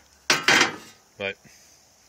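A brief metallic clatter, about half a second long, from a cut-out piece of rusted sheet-metal car body panel being handled and shifted on a surface.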